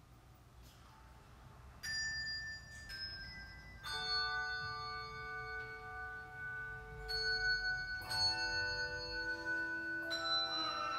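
Handbell choir ringing chords of bronze handbells that ring on and overlap. The first two seconds hold only fading notes, then new chords ring out about 2, 4 and 8 seconds in.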